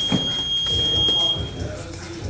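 A gym round timer sounds one long, high, steady beep that stops just under two seconds in. Under it are low thuds and shuffling of bare feet and bodies on the mats.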